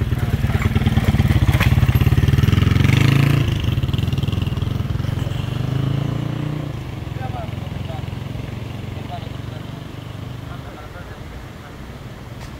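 A motorcycle engine running close by, loudest over the first three or four seconds, swelling briefly again, then fading away.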